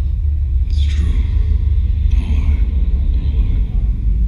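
A projection show's sound system playing a loud, steady deep rumble, with a whoosh about a second in.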